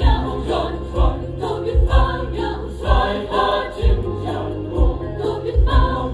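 Mixed choir singing a sacred choral song under a conductor, with low thumps about once a second beneath the voices.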